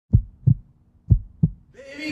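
Deep, muffled thumps in two lub-dub pairs, like a slow heartbeat sound effect. Music begins to fade in near the end.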